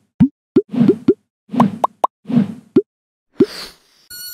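Cartoon sound effects for an animated logo: a quick run of short rising 'bloop' plops mixed with duller thuds, several a second. The run ends in a brief swish near the end.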